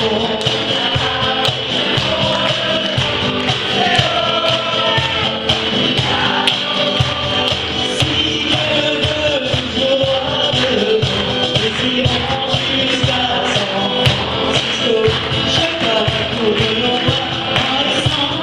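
Live folk song: a singer with a strummed acoustic guitar over a steady percussion beat.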